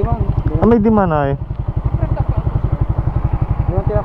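Suzuki Raider 150 Fi's single-cylinder four-stroke engine idling while the bike stands still, an even, rapid low pulse of about ten beats a second.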